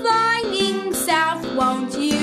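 Children's song: a voice singing a run of held notes over light instrumental backing.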